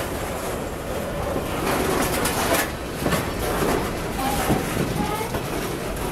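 Freight cars of a Norfolk Southern manifest train rolling past close by: a steady rumble of steel wheels on rail, with clacks as the trucks cross rail joints and brief high wheel squeals about four seconds in.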